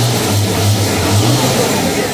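Large exposed engine on a homemade farm machine running hard under throttle: a loud, steady drone with a strong low note that drops out briefly once or twice.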